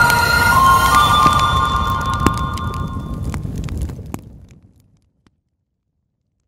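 Closing logo sting: held synth notes over a low fire-like rumble with scattered crackles, fading out about four to five seconds in, then silence.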